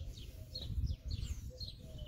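Small birds chirping repeatedly, quick short falling chirps, over a low rumble at the bottom of the sound.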